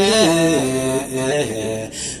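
Nashida singing: a voice holds long wordless notes that step up and down in pitch, with brief breaks about a second in and near the end.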